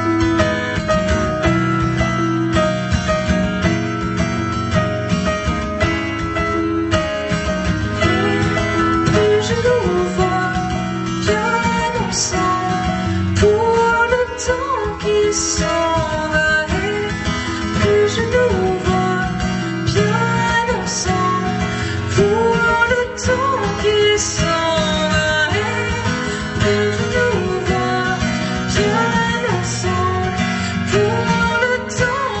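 A live song: a woman sings over a strummed acoustic guitar, with piano accompaniment. The voice comes in about eight seconds in, after an instrumental passage.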